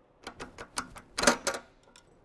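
A quick run of about eight sharp clicks and knocks, hard objects or a mechanism being worked, loudest a little past the middle.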